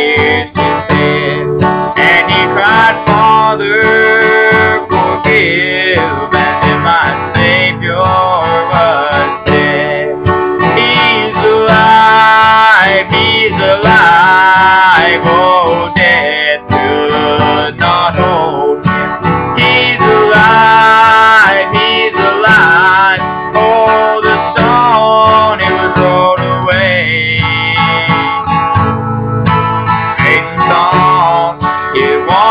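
A man singing a gospel song to his own acoustic guitar accompaniment, the voice carrying the tune throughout.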